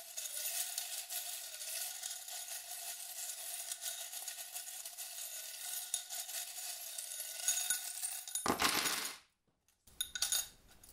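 Small metal charms shaken in a cup, a continuous jingling rattle. About eight and a half seconds in comes a louder burst as they are thrown out onto a board and scatter, then the sound cuts off suddenly.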